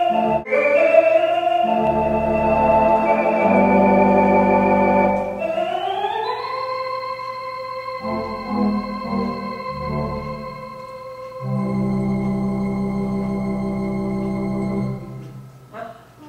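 Roland Atelier home organ playing a slow example of an "exhale" style of intro or ending, in sustained chords. About five seconds in, the notes slide upward in pitch. After a softer passage and a short gap, a final chord is held and cut off shortly before the end.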